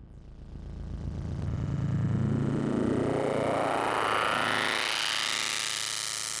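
Doepfer A-100 analog modular synthesizer playing a dense, noisy drone that swells in over the first two seconds and sweeps steadily upward in pitch, with a thin high tone climbing slowly above it.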